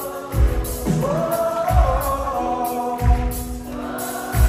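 A live band playing a slow pop song with singing, heard through a concert hall's loudspeakers, with a deep drum beat about every 1.3 seconds.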